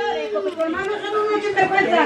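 Several people talking at once in indistinct chatter.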